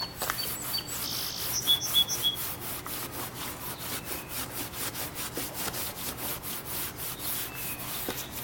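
Fine steel wool pad rubbed back and forth in quick, repeated strokes along stainless-steel car window trim, scuffing the metal clean so paint will stick. A bird chirps briefly about a second in.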